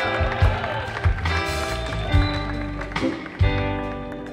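Electric Chicago-style blues band playing live: electric guitar notes over electric bass and drums, with several sharp drum hits.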